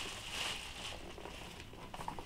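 Faint rustling of a plastic shopping bag and handling of a cardboard box, fading within the first second to a low background.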